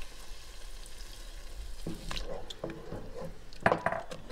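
Heavy cream cooking in a pot of sautéed vegetables and flour, stirred with a wooden spoon. The spoon knocks against the pot several times in the second half.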